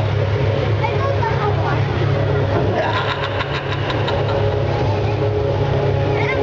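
An engine running steadily at low revs, a constant low hum, with a crackle of noise about halfway through.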